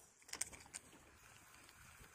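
Faint handling of a baitcasting rod and reel: a quick cluster of sharp clicks about half a second in and one more click just after, then a faint steady hiss.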